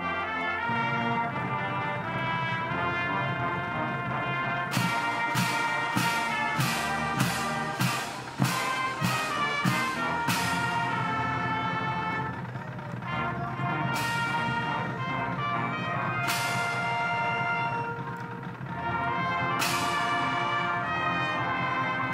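Marching band playing, with brass (trumpets, trombones, tubas) holding sustained chords. Between about 5 and 10 seconds in, a quick run of percussion hits about two or three a second punctuates the music, with single accents again near the end.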